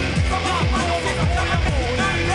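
Hip-hop track in an instrumental stretch without rapping: a steady beat of deep kick drums under a sliding, wavering melody.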